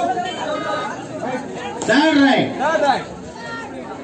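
Men's voices: background chatter with one voice calling out louder for about a second, roughly two seconds in.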